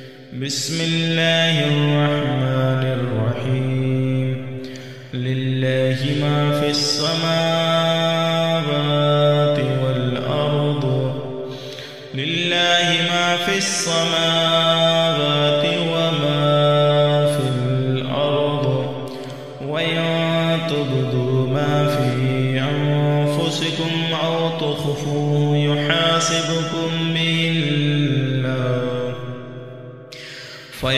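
A man reciting the Quran in a slow, melodic chant, holding long, ornamented notes. He breaks off briefly for breath about every seven seconds.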